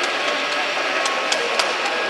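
A 4mm-scale model train running along the layout's track: a steady running noise with a few light clicks.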